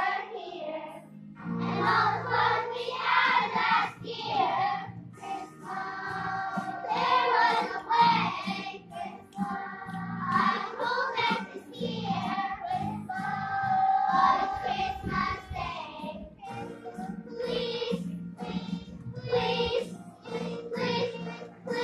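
Children's choir singing together over instrumental accompaniment with steady low sustained notes.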